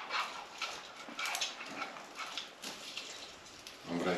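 Faint rustling of spruce branches and light scattered clicks as a wire star topper is worked down onto the top of a live Christmas tree.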